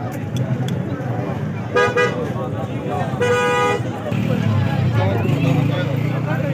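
Two vehicle horn toots: a short one about two seconds in and a longer one, about half a second, a second and a half later. Both sound over a busy crowd's chatter.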